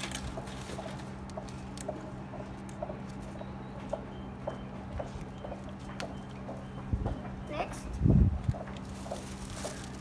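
Steady hum of a vending machine, with a run of light clicks about two a second as coins go into the slot and keypad buttons are pressed. A few low thumps come near the end, the loudest about eight seconds in.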